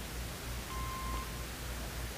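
Steady hiss and low hum of the recording's background noise, with one short faint beep a little under half a second long near the middle.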